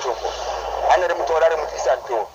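Speech from the radio interview, a voice talking steadily with a thin, bass-less sound like a broadcast or phone line.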